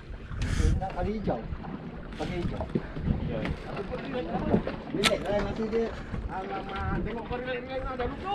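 Men talking in the background, with wind rumbling on the microphone, and one sharp click about five seconds in.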